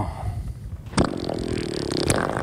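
A dubbed-in fart sound effect: a buzzy, drawn-out raspberry that starts sharply about a second in and carries on, over a low rumble of water and boat.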